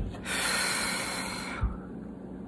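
A person takes a long, loud breath in through the nose, lasting about a second. There is a low thump just before it and another near the end.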